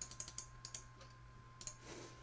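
Faint keystrokes on a computer keyboard: a quick run of taps in the first second, then another tap or two near the end, over a low steady hum.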